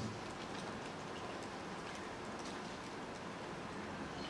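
Steady room tone of a lecture hall: an even low hiss with a few faint ticks.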